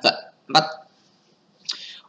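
Speech only: a man says a single short word, with pauses around it.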